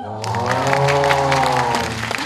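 Audience applause breaking out about a quarter second in, with a held musical chord sounding under it.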